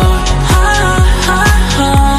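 Background pop/R&B song in a gap between sung lines: deep bass notes that drop in pitch on the beat, under a steady synth melody.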